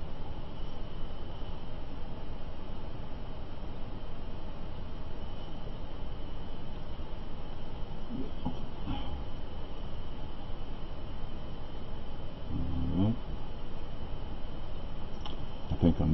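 Steady background hiss with a faint steady high tone, broken twice by a man's brief low murmur, about halfway through and again near the end.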